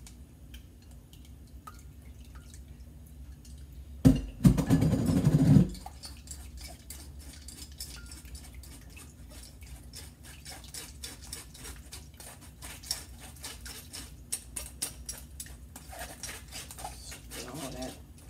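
Tamarind juice dripping and trickling through a mesh strainer into a glass bowl as the pulp is stirred and pressed, with many small clicks and taps. About four seconds in, a loud noise lasting under two seconds stands out.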